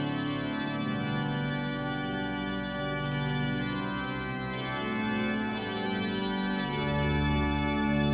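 Organ playing slow, held chords, with a deep bass note coming in near the end.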